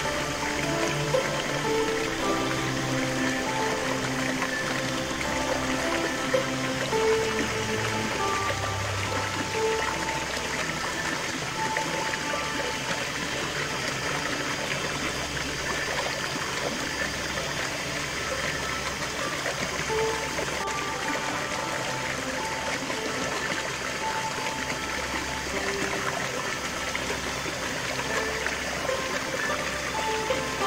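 Steady splashing and rushing of a small stream cascade pouring into a rocky pool, under slow, calm background music of long held notes.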